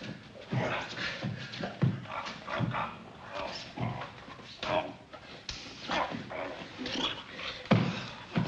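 Two heavyweight wrestlers grunting and straining in irregular bursts, breathing hard as they grapple in a hold.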